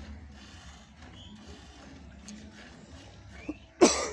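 A Murrah buffalo being hand-milked makes one short, loud sound just before the end, over a faint, steady low hum.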